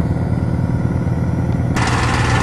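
An engine idling steadily, a low hum with a fine regular pulse. Near the end a sudden hiss comes in over it.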